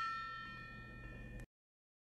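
A small brass gong, struck with a mallet, ringing out with several high metallic tones and fading steadily, then cut off abruptly about one and a half seconds in.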